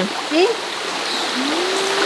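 Shallow stream running over rocks, a steady hiss of flowing water.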